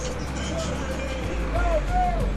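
Street background: a steady low traffic rumble with faint distant voices.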